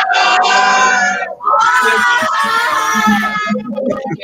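Schoolchildren shouting a loud goodbye and thank you together, heard over a video call: one shout of about a second, then a longer one of about two seconds.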